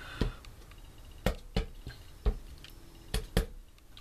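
The metal tines of an old hand-held bread-dough tool are pressed down onto paper on a tabletop to stamp texture. They make about six separate light taps, spaced irregularly.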